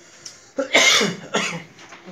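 A woman coughing twice, the first cough about half a second in and a second one a moment later.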